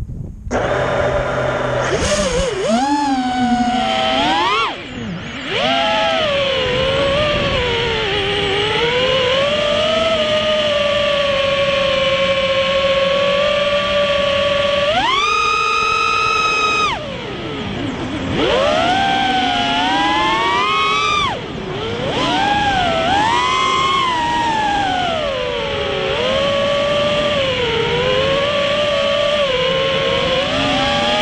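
FPV racing quadcopter's brushless motors spinning Ethix S3 propellers, heard from the onboard camera: the whine starts about half a second in and keeps rising and falling in pitch with the throttle, holding a steady higher whine for about two seconds around halfway as the quad climbs.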